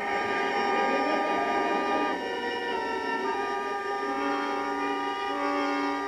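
Orchestral music bridge of sustained chords with brass, the held notes shifting slowly from one chord to the next, marking a scene transition in a radio drama.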